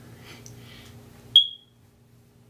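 A single short, high-pitched electronic beep about a second and a half in, starting sharply and dying away quickly, over faint room sound.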